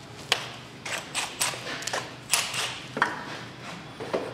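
Scattered sharp clicks and light knocks of tools and parts being handled around a car's engine bay.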